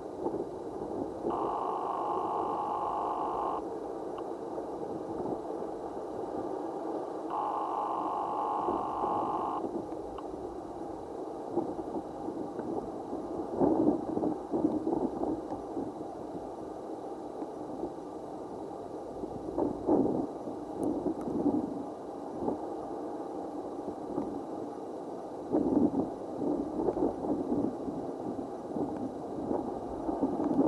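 Rushing seashore background noise that swells every five or six seconds. In the first ten seconds a steady two-pitch tone sounds twice, about two seconds each time.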